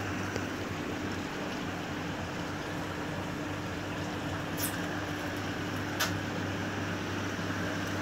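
A steady low hum over an even hiss, like a small fan or motor running, with two faint clicks, one about four and a half seconds in and one at about six seconds.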